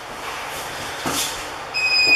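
Gis rustling and scuffing on the mat as two grapplers roll. Near the end a steady, high electronic beep from the round timer starts, signalling the end of the round.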